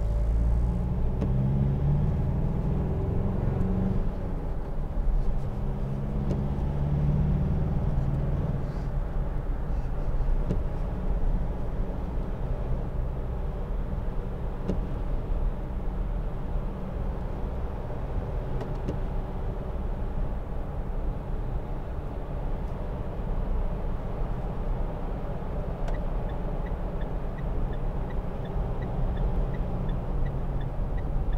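Mitsubishi L200 2.5 DI-D four-cylinder turbo-diesel and road noise heard from inside the cab while driving. The engine is louder with shifting pitch for the first eight seconds or so as the pickup gets under way, then settles to a steady cruise. A faint regular ticking comes in near the end.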